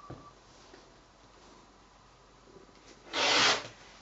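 Rotary cutter blade drawn along an acrylic ruler, slicing through four layers of folded fabric on a cutting mat: one short rasping cut of about half a second, a little after three seconds in.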